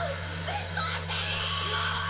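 Soundtrack music from the anime episode, playing quietly and evenly over a steady low hum.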